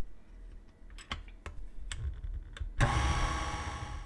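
A few light clicks and knocks, then near the end an electric stand mixer's motor starts and runs steadily for about a second, beating flour into thick cake batter.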